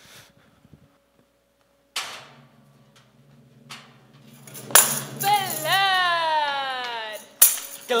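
Theatre scene-change music and effects. A single hit about two seconds in. Near the middle a sharp crash, then a long wavering high tone that keeps falling over a low held note, and another sharp hit just before the end.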